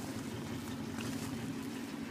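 A 1969 International Harvester 1300 one-ton truck's engine idling, a steady low hum.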